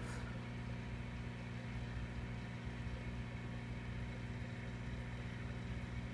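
Aquarium equipment running: a steady electrical hum with a light hiss, unchanging throughout.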